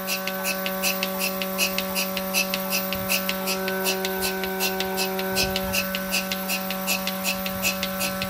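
Mini milking machine running while milking a cow: a steady vacuum-pump motor hum with the pulsator's regular hissing clicks, just under three a second, as the teat cups draw milk.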